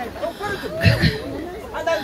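Several voices talking and chattering over one another, with a low thump about a second in.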